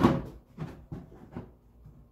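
A few light knocks spaced roughly half a second apart, after a louder knock at the start.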